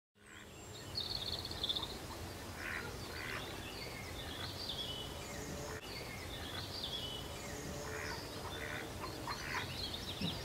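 Small birds chirping and singing in many short, scattered calls over a steady low background noise, fading in at the start.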